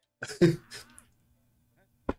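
A man briefly clears his throat about a quarter second in, followed by a softer trailing sound, then quiet.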